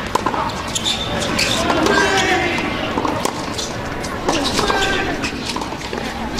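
Tennis rally on a hard court: a ball is struck by rackets and bounces, giving sharp pops several times, under people's voices from around the courts.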